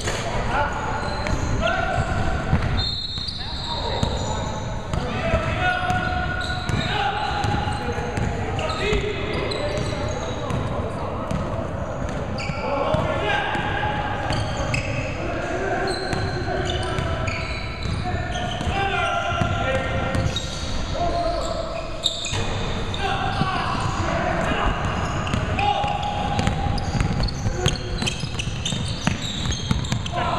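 Indoor basketball game on a hardwood court: the ball bouncing, with short knocks throughout, and players' voices calling out in the gym.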